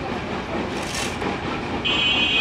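A stationary diesel engine on a machine rig, running steadily.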